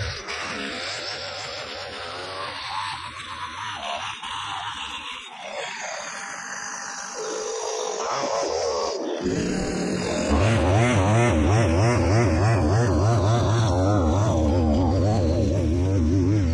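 Two-stroke Stihl line trimmer (whipper snipper) engine running, its note wavering quickly as throttle and load change. It turns louder and deeper about nine seconds in.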